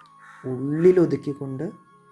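A man's voice, drawn out with pitch rising then falling, over a faint held background-music note.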